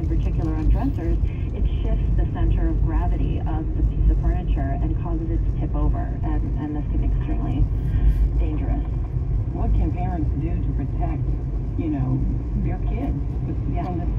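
A voice talking from the car radio over the steady low rumble of engine and tyre noise inside the cabin of a moving car.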